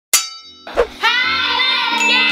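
A single bright metallic chime struck right at the start, ringing and fading. About a second in, an intro music jingle starts with a bending melody.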